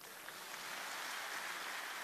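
Audience applause, faint and steady, building slightly over the first second.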